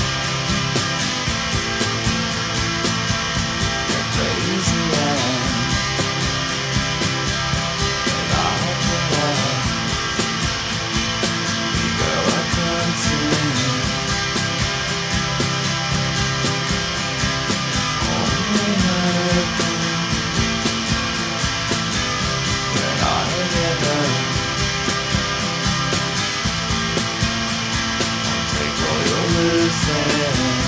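Instrumental stretch of an indie rock song: electric guitars over a steady band beat, with no singing. A line that glides downward in pitch comes back every four to five seconds.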